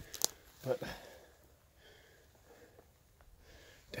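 Handheld camera and rain jacket handled close to the microphone: a sharp click just after the start, then faint rustling and breathing.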